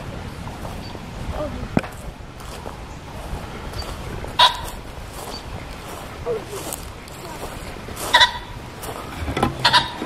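Short, nasal animal calls: two clear ones about four seconds apart and a quicker couple near the end, over a steady low outdoor rumble. The caller is unseen in the trees and is taken for some sort of bird.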